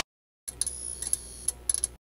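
Retro VHS-style sound effect. A brief burst of static at the start, then about half a second of silence. After that comes a steady low hum under a thin high whine, broken by a handful of sharp mechanical clicks like a videotape deck's transport.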